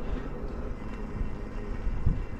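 Uneven low rumble of wind on the microphone and tyre noise from an electric bike rolling along a paved trail.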